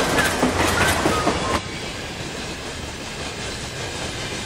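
Passenger train carriage heard from inside while it runs: a steady rumble and rattle of the moving train, dropping slightly about a second and a half in and then holding even.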